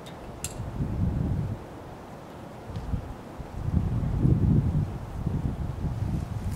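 Wind buffeting the microphone in two gusts, a low rumble about a second in and a longer one from three and a half to five and a half seconds in, with a faint click near the start.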